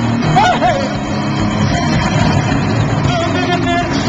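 A live band playing loud, distorted music: a dense, unbroken wall of sound with wavering pitched lines over it about half a second in and again near the end.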